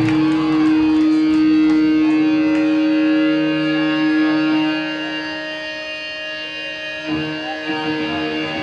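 Amplified electric guitar holding a single ringing note that fades away after about five seconds, with a new guitar chord struck about seven seconds in.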